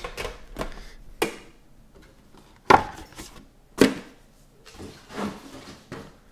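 A small cardboard trading-card box being handled and set down on a table: a series of knocks and taps, the two loudest a little before and a little after the middle.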